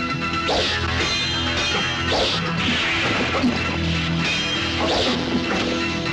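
Film score music with sharp dubbed punch and kick impact effects, several of them at uneven intervals about a second apart.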